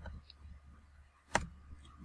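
A single sharp computer keyboard key click about one and a half seconds in, with a few much fainter taps, over a low steady hum.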